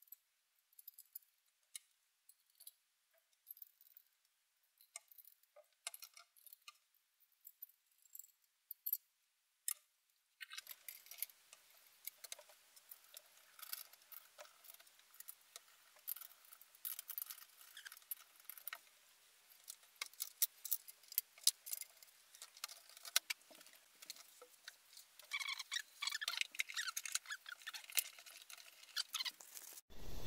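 Faint clicks and light rattles of plastic and metal Nissan Leaf LED headlamp parts being handled and fitted together during reassembly, sparse at first and turning into a denser patter of small clicks from about ten seconds in.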